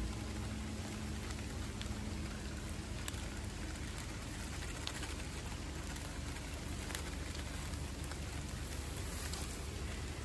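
Bluegill fillets sizzling in a small pot on a camp stove: a steady frying hiss with scattered sharp pops.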